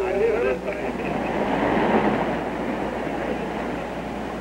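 Streetcar running along the tracks, a rumbling noise that swells to its loudest about two seconds in and then fades away.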